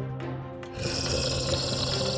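Background music with long held notes; a rougher, hissing layer joins a little under a second in.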